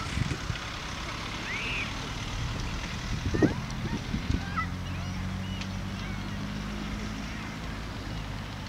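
Open-air background: a low, uneven rumble with a steady low motor hum setting in about halfway, and a few short, high chirps, like small birds, scattered through it.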